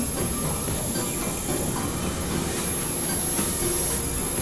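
Dense, steady wash of layered electronic noise and drones with a thin, high whistling tone held throughout; an experimental noise collage whose texture resembles train rumble and wheel squeal.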